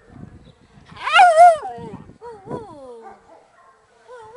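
A dog whining: a loud, wavering yelp about a second in, followed by softer whines that slide down in pitch.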